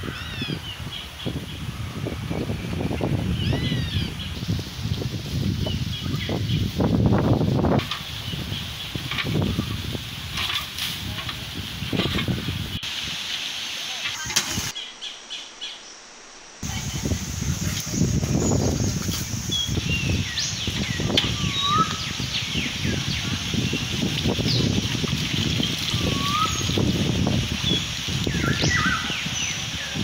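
Water sloshing and splashing in an open garden well, with short bird chirps, most of them in the second half.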